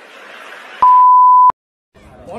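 A faint hiss, then a loud, steady electronic beep at one high pitch, lasting under a second and cutting off abruptly, followed by silence.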